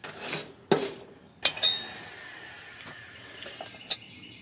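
Metal clanking as steel tools and work are handled at a blacksmith's anvil: a knock just under a second in, then a sharp clink about a second and a half in that rings on briefly, and a light click near the end.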